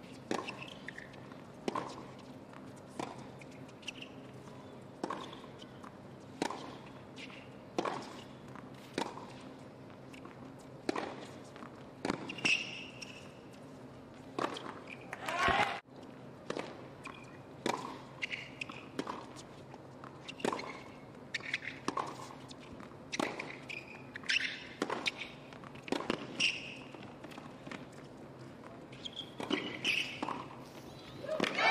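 Tennis balls being hit in rallies on a hard court: crisp racquet strikes and ball bounces, about one a second, with a short break near the middle.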